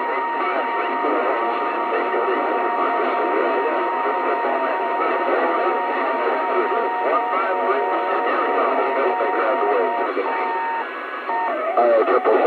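CB radio receiving a crowded skip channel: several distant stations talking over one another through static. A steady whistle runs under the voices and breaks off near the end.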